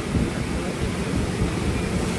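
Steady machinery noise: an even rumble and hiss, heaviest in the low end, with no clicks or changes in level.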